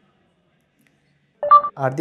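Silence for over a second, then a short electronic beep, one steady tone about a quarter of a second long, a second and a half in, just before a voice starts speaking.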